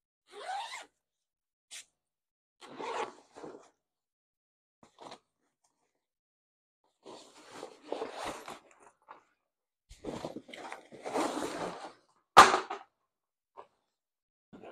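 The zipper of a nylon paddleboard backpack is pulled open about half a second in. Then come bursts of rustling and sliding as the bulky bag and the rolled inflatable board are handled, with one sharp knock near the end, the loudest sound.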